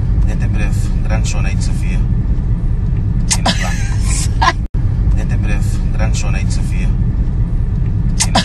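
Steady low rumble of a car heard from inside the cabin, with short snatches of voices over it. The sound cuts out for an instant a little past halfway.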